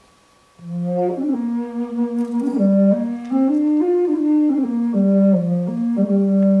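Bass furulya (a bass fipple flute) playing a slow melody in long held notes, with a soothing sound. It starts low about half a second in, steps up to a peak near the middle, comes back down, and ends on a long low note.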